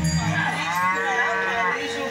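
A long moo for the costumed Nandi bull character, rising and then falling in pitch, over a steady low drone that stops near the end.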